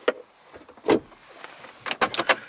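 Clicks and a sharp knock from a car's plastic interior trim being handled around the centre console, the loudest knock about a second in, with a few faint ticks near the end.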